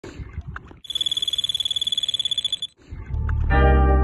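Carp-fishing bite alarm sounding a fast, unbroken run of high-pitched beeps for about two seconds, the signal of a fish taking line. Music with a sustained chord and a low bass comes in about three seconds in.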